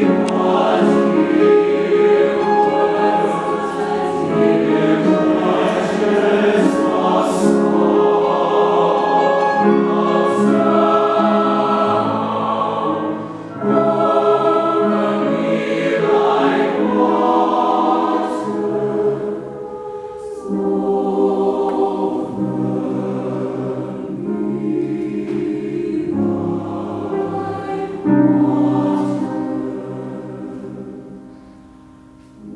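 Mixed choir of young voices singing a slow, sustained choral piece in long held phrases, with brief breaks about 13 and 20 seconds in.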